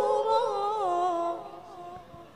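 A woman reciting the Qur'an in the melodic tilawah style: the end of a sustained, ornamented phrase that winds downward in pitch and fades out about a second and a half in.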